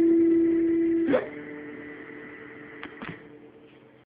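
B.C. Rich electric guitar's last note ringing out and fading, broken about a second in by a short upward slide in pitch. Fainter notes hang on after it, and two light handling clicks come near the end.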